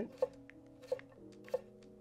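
Four short, light knife strokes on a cutting board as celery is sliced into thin strips. Soft background music with held chords runs underneath, changing a little past a second in.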